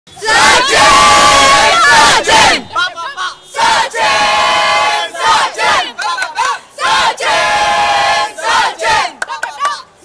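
A group of young people shouting and cheering together in unison. There are three long drawn-out cheers of about two seconds each, with shorter shouts in between.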